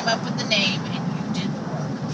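Steady low road and engine noise inside a moving car, with brief snatches of voice.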